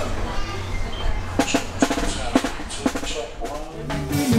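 A handful of separate drum-kit hits, struck one at a time during a band's soundcheck, over a steady low hum.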